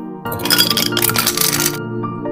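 Ice cubes dropping into a glass, a dense clatter of clinks and cracks for about a second and a half, over soft background music.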